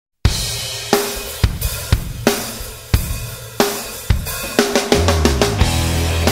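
Opening of a hard rock song: a drum kit plays a sparse intro of heavy snare and bass drum hits with crashing cymbals, about two a second. About five seconds in the beat turns busier and a low sustained bass part comes in under it.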